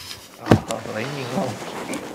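A single sharp click about half a second in, followed by a person's low, quiet voice.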